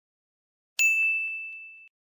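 A single high, bell-like ding sound effect, struck about three-quarters of a second in and fading away over about a second.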